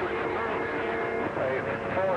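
Radio transceiver receiving a station over the air: noisy, hissy audio with a steady whistling tone for about the first second, then a garbled voice coming through.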